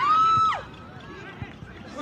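One long, high shout at a steady pitch lasting about half a second, then fainter crowd voices and outdoor background noise.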